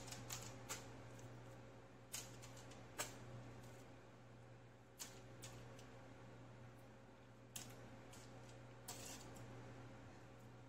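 Faint, scattered clicks and light taps from chicken pieces and aluminium foil being handled in a pan, a few seconds apart, over a steady low hum.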